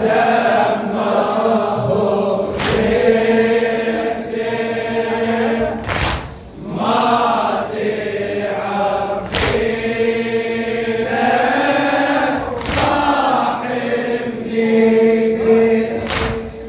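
Men's congregation chanting a latmiya lament refrain in unison on long held notes. Sharp slaps of hands striking chests (latm) cut through the chant every two to three and a half seconds.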